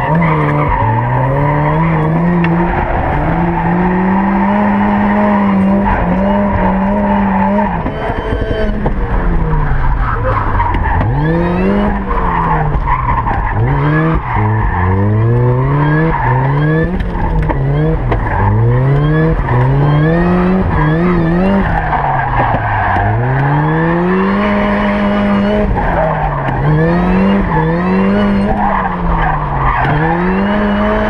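Supercharged Mk1 Mazda MX-5's four-cylinder engine revving up and down over and over as the car drifts, repeatedly held at the top of its revs. Tyres squeal and skid underneath. Heard from inside the cabin.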